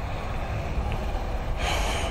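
A person's breath, heard as a short rush of air near the end, over a steady low rumble.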